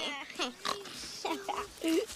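A boy laughing under his breath in several short bursts of laughter.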